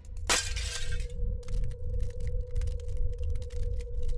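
Glass-shattering sound effect: one crash with a falling sweep about a third of a second in, dying away within a second. It is followed by a steady low hum and a pulsing rumble under scattered crackles.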